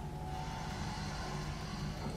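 Soft background music, with a long breath drawn in through one nostril starting a moment in and heard as a steady soft hiss. It is a timed four-second inhale of alternate-nostril breathing.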